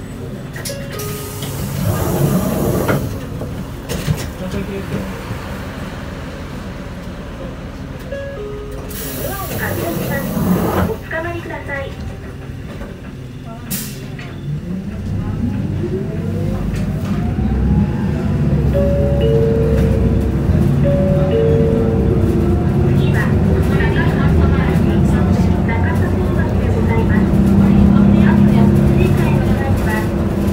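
Isuzu Erga city bus heard from inside the cabin. Its diesel runs quietly at low speed, with two short air hisses. About halfway through, the engine revs up in a rising whine as the bus accelerates, and it stays loud.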